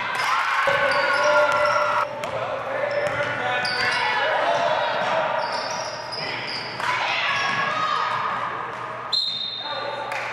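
Basketball game in a large gym: a ball bouncing on the hardwood floor amid voices calling out. Near the end comes a short, high referee's whistle.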